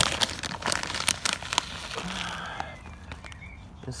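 A plastic fertiliser bag crinkling and rustling as it is opened and a hand reaches in for pelletized rock mineral. Dense crackling over the first two and a half seconds, then quieter.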